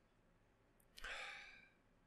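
A man sighs once, a short breathy exhale about a second in, against near silence.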